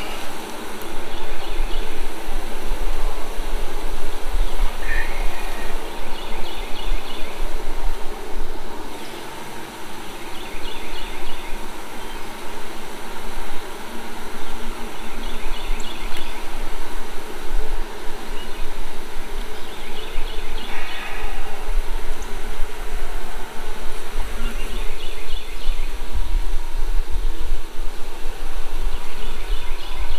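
A honeybee colony roaring loudly as its nuc is opened and frames are moved: a steady, dense buzz of many bees, with a low rumble underneath. The roar leaves the beekeeper wondering whether he dropped the queen.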